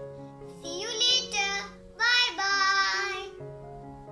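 Background keyboard music of steady held notes, with a child's high voice singing two drawn-out phrases over it from about one second in until near the end.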